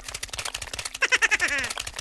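Rapid run of light clicks, a scurrying sound effect for a toy crocodile running off. About a second in comes a short animal-like cry that falls in pitch.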